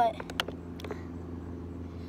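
A steady idling engine hum, with a few light clicks in the first second from plastic water bottles being handled.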